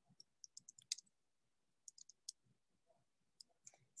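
Faint computer-keyboard typing: a quick run of keystrokes in the first second, a few more about two seconds in, and a couple more near the end.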